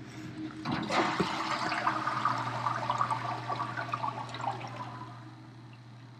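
Toilet flushed: a clunk of the flush mechanism about a second in, then water rushing into the bowl for about four seconds before fading. The bowl stays full of murky brown water, not draining away.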